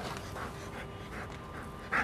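A dog panting in quick, even breaths while it sits waiting for its next command in search-and-rescue directional training.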